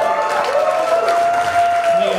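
Live audience applauding and cheering, with one long high held call ringing out over the clapping from about half a second in.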